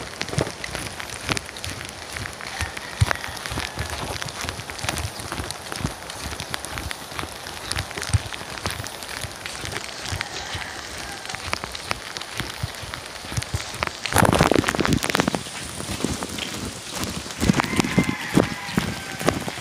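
Steady rain, with many close, sharp raindrop taps. About fourteen seconds in, a louder burst of noise lasts for a second or so.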